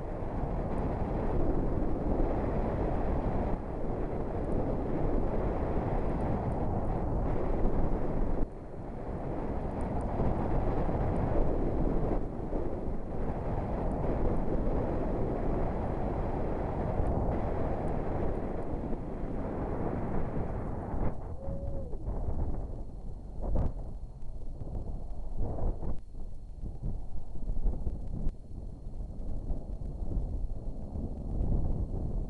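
Wind and road noise inside a car driving through a whiteout blizzard: a steady, dense rushing noise that eases and turns patchier about two-thirds of the way in, with a single sharp click a couple of seconds later.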